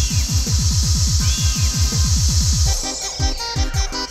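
Lampung remix dance music from a live orgen (electronic keyboard) rig over a PA. A rapid roll of deep kick drums, about eight a second, breaks off about three seconds in into sparser beats with synth chords.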